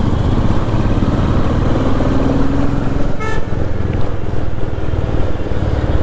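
Single-cylinder motorcycle engine running under way in traffic, steady throughout, with a short horn toot a little after three seconds in.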